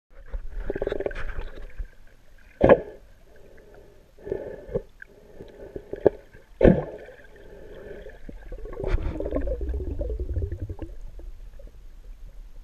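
Muffled underwater sound picked up by a submerged camera: bursts of gurgling water movement, with sharp knocks near three seconds in and again near seven, and a low rumble near the end.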